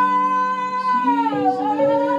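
Worship music: a woman's voice holds a high sung note that dips briefly and climbs back, over steady held chords.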